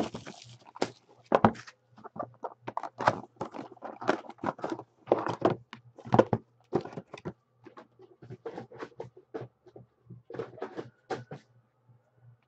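A cardboard hobby box of 2013-14 Select basketball cards being opened and its foil packs handled: a quick, irregular run of crinkles, taps and thunks of cardboard and wrappers, thinning out near the end.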